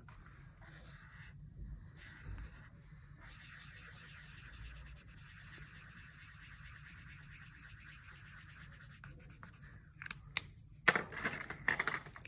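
Felt-tip marker colouring on paper: a faint, steady scratchy rubbing of quick back-and-forth strokes, starting a few seconds in. A few louder clicks and knocks near the end.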